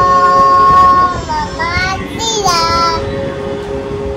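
A young child singing a long, loud held note that wavers and slides up and down in pitch about a second in, over a fainter steady lower tone.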